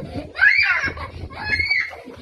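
A young girl squealing and laughing in high-pitched shrieks, the loudest about half a second in and a shorter one about a second and a half in.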